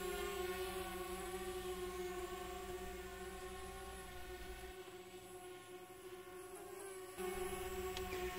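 DJI Spark quadcopter's propellers humming steadily as it flies a circle around the pilot. The hum grows fainter in the middle and comes back louder near the end.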